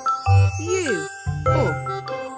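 Bright children's background music with a jingling melody over a pulsing bass. Twice there is a falling swoop in pitch, a cartoon transition sound effect.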